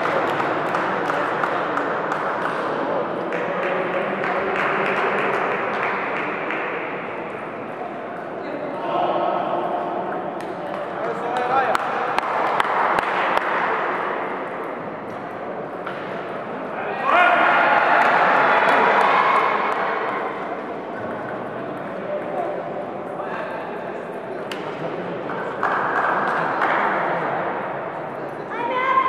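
Table tennis ball ticking off paddles and table in short rallies, over steady chatter and calls from people in the hall. A louder burst of voices comes about two-thirds of the way through.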